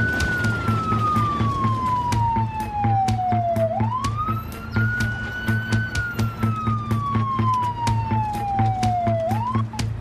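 Police car siren wailing through two slow cycles, each a quick rise, a brief hold and a long slow fall, cutting off just before the end. Under it runs background music with a steady low beat.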